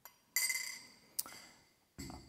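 A spoon knocking against a glass tumbler of water: one clear ringing clink that dies away over about a second, then a lighter tick.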